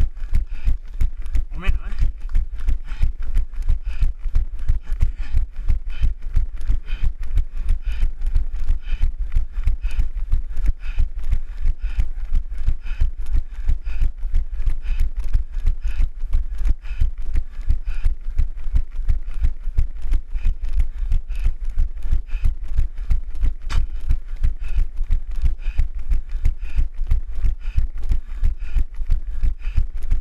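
A runner's footfalls on asphalt jolting a hand-carried camera, a steady rhythm of about three knocks a second over a low rumble of wind and handling on the microphone, with heavy breathing in time. A short rising sound comes about two seconds in.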